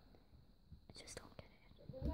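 Near silence, with a few faint soft clicks and a faint whisper around the middle.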